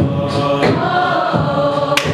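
A cappella choir singing sustained chords, with a female lead singer on a microphone.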